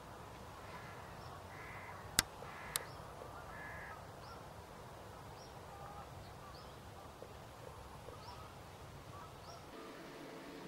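Outdoor countryside ambience: a bird cawing twice in the first few seconds, faint high chirps from small birds, and a low steady rumble. Two sharp clicks about half a second apart, a little over two seconds in, are the loudest sounds.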